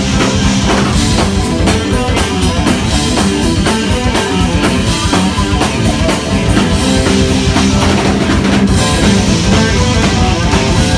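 A live rock band plays an instrumental passage on electric guitar, bass guitar, drum kit and keyboards. The drums keep up a steady beat with cymbals throughout.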